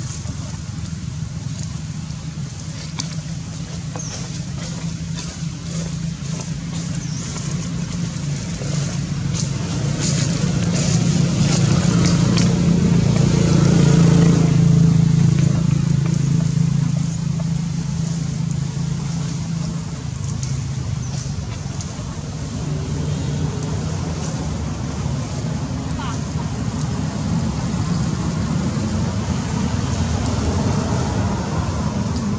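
Low steady hum of a motor vehicle engine nearby, swelling to its loudest about halfway through and then easing off, as a vehicle passing by.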